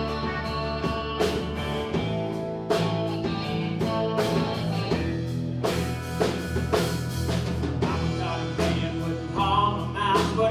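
Live band playing an instrumental passage of a country-rock song: electric and acoustic guitars over a drum kit beat.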